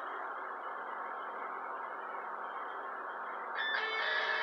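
A radio or TV broadcast playing in the room between adverts: a steady, hissy bed with faint music. A brighter, slightly louder sound with steady high tones comes in near the end.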